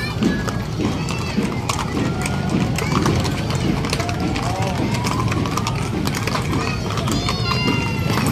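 Hooves of several horses clip-clopping on cobblestones as a line of mounted police horses walks past, a steady run of sharp clicks amid crowd voices.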